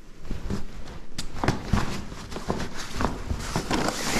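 Irregular knocks and fabric rustling as a backpack and jacket are handled close to the microphone, with a denser rustle near the end.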